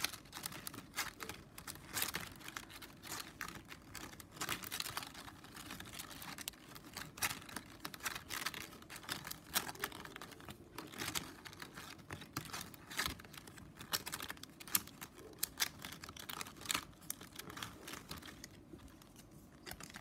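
Plastic strapping band strips clicking and scraping against each other as they are woven over and under by hand: an irregular run of soft clicks and rustles.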